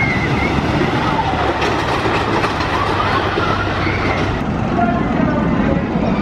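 A Philadelphia Toboggan Coasters wooden roller coaster train running along its wooden track with a steady rumble and clatter. Riders' voices are heard over it.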